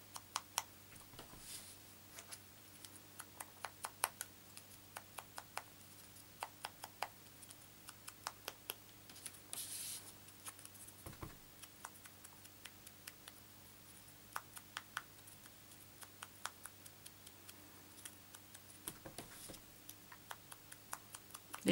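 Faint, irregular light tapping of a sponge dauber dabbing white craft ink onto the edges of small card flower cut-outs, a few taps a second, with a brief hiss about halfway through and a single soft thump just after. A steady low electrical hum runs underneath.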